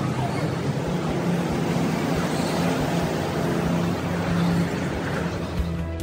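Steady outdoor city background noise: an even rush with a low hum running under it, typical of road traffic.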